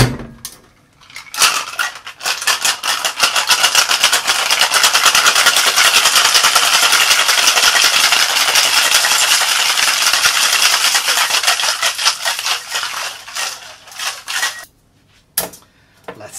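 Ice rattling rapidly inside a tin-on-tin Boston cocktail shaker, shaken hard and evenly for about thirteen seconds. It opens with a sharp metallic knock as the tins are seated together, and it stops abruptly, with a couple of light clicks near the end.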